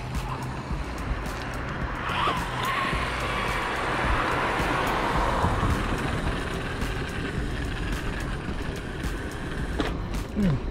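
Steady rushing road and wind noise from riding an electric unicycle along the pavement, swelling to its loudest in the middle.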